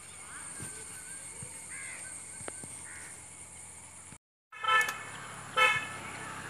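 Faint outdoor background with soft bird chirps, broken by a brief dropout. A bird then gives two loud, harsh calls in quick succession near the end.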